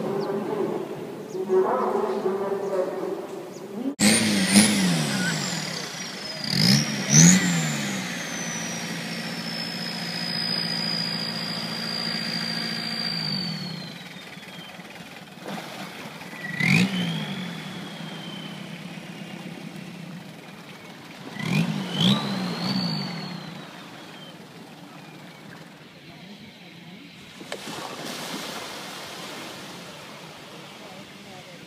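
Longtail boat engine with a long propeller shaft, revving up sharply and dropping back about four times, with a high whine that glides slowly down between revs. It starts suddenly after a few seconds of a different, wavering pitched sound.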